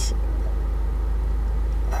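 A steady low hum with no other sound over it.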